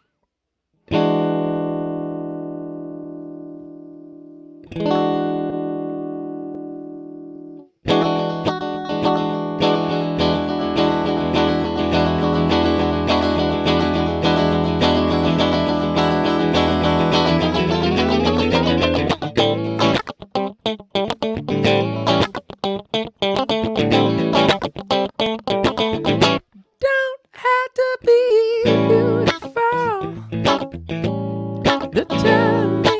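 Stratocaster-style electric guitar: two chords struck and left to ring out, then continuous playing that turns into a choppy, rhythmic strum about two thirds of the way through. A man's singing voice comes in near the end.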